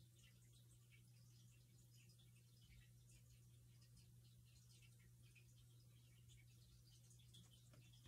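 Near silence: room tone with a steady low hum and faint small clicks and rustles of fingers handling modeling clay.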